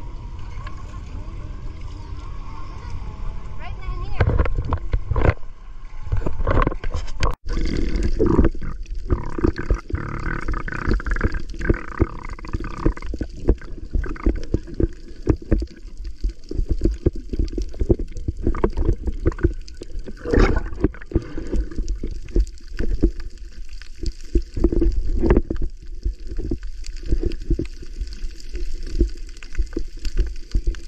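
Water sloshing and gurgling around a camera in a closed waterproof housing as it goes under and moves underwater, with dense irregular knocks and splashy strokes from about four seconds in and a brief break about seven seconds in.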